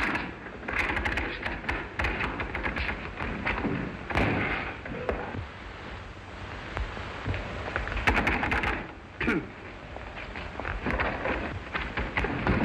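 Short vocal exclamations and thumps from a slapstick scuffle, with a short falling vocal glide near the end, over the hiss and clicks of a 1930s optical film soundtrack.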